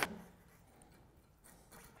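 Near silence: room tone, after the last word of speech fades out at the start, with a couple of faint small sounds near the end.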